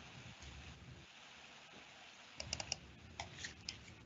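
Faint typing on a computer keyboard: a quick run of key clicks about two and a half seconds in, then a few more scattered clicks.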